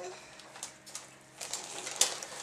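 Faint crinkling and rustling of wrapping paper as a gift is handled and unwrapped, in a few brief crinkles that come thicker near the end. A held voice sound trails off at the very start.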